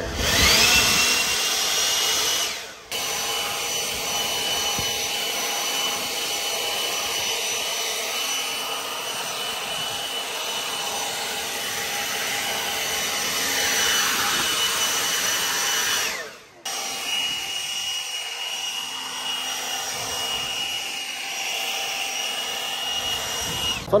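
DeWalt cordless brushless leaf blower running flat out, a steady high whine over the rush of air. It spins up at the start, and the sound drops away and comes back twice, briefly, about three seconds in and again about sixteen seconds in.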